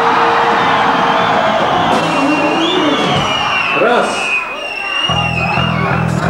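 Loud live rock band with electric guitars, heard through a club PA, with audience shouts and whoops over it. A steady low drone comes in about five seconds in.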